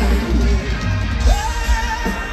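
Live rock band playing over a concert PA, heard from the crowd, with a male lead vocalist singing; about a second in his voice rises to a high note and holds it.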